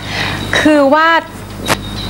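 A woman says a short phrase in Thai over a steady background hiss, followed by a single sharp click.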